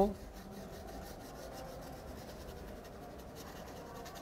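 Chalk scratching on a chalkboard in a quick run of faint short strokes as a region of a drawing is hatched in.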